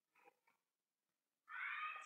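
Quiet room tone with a few faint keyboard clicks in the first half second. Then, about a second and a half in, a short high call like a cat's meow.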